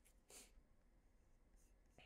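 Near silence: room tone, with one brief faint swish about a third of a second in.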